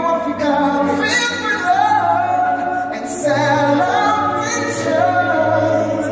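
A live band's music with several voices singing together in long held and sliding lines over a low sustained bass note.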